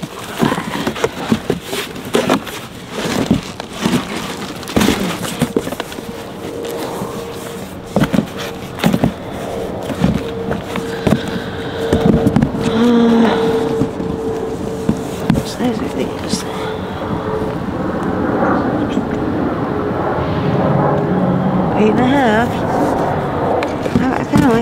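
Sneakers and cardboard boxes being handled: many short knocks, rustles and scrapes as shoes are lifted out of the boxes and dropped back in, busiest in the first half. A steady hum runs under it from a few seconds in until near the end.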